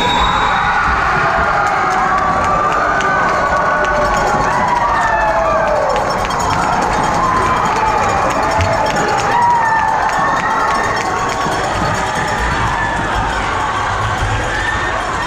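Gymnasium crowd cheering and screaming in celebration, loud and sustained, with many overlapping high-pitched shrieking voices echoing in the hall.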